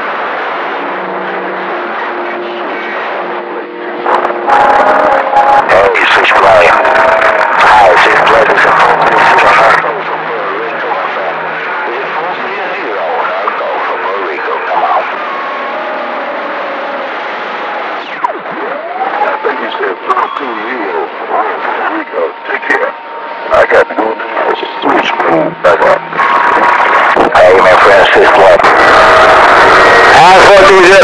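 Radio receiver audio: faint, garbled voices off the air with steady whistling tones, broken by loud stretches of static from about four to ten seconds in and again near the end. A whistle slides upward about two-thirds of the way through, and the signal turns choppy for several seconds after it.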